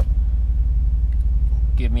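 Steady low rumble of a semi-truck idling, heard from inside its sleeper cab; it runs unchanged through a pause in speech, and a man's voice comes back near the end.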